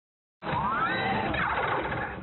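Logo-intro whoosh sound effect: a noisy sweep with a rising tone, starting about half a second in.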